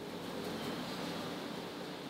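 Faint steady hiss of room tone, with no distinct event.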